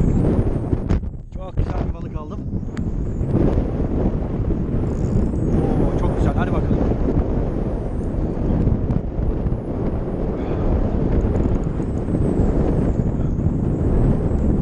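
Wind buffeting the microphone: a steady, loud, low rumble.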